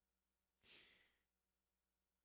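Near silence, with one faint breath a little under a second in.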